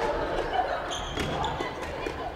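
Badminton play in a large hall: several sharp cracks of rackets hitting shuttlecocks and short squeaks of shoes on the wooden floor, over voices.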